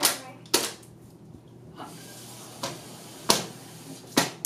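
A small plastic bottle holding dry ice and warm water squeezed by hand in short, sharp bursts, pushing out puffs of fog: three loud ones, at the start, about half a second in and near the end, with a fainter one between.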